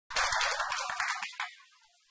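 A loud, dense crackle of noise with a low rumble beneath it, dying away after about a second and a half.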